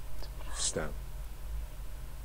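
A woman's soft, half-whispered speech: a short hiss about half a second in, then a brief falling syllable, over a low steady hum.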